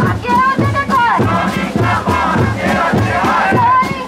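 Protest crowd chanting slogans in call and response, led by a woman shouting into an amplified microphone, over a steady drum beat.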